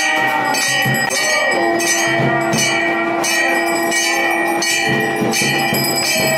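Temple bells rung continuously for the aarti, struck over and over at about two strokes a second. A steady low held note sounds under them from about a second and a half in until about four and a half seconds in.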